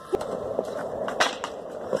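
Skateboard wheels rolling on concrete, with a few sharp knocks: one right at the start and two more about a second in.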